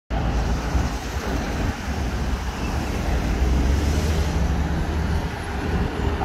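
Road traffic on a city street: cars and buses driving through an intersection, a steady low engine and tyre rumble with no single standout event.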